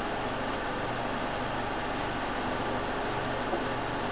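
A steady background hum with a hiss over it, even throughout, with no distinct knocks or calls.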